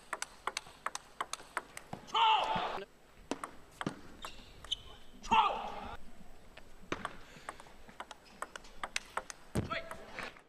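Table tennis rally: the plastic ball clicks sharply off the paddles and the table in quick succession. Two loud shouts of about a second each come a little over two seconds in and again about five seconds in.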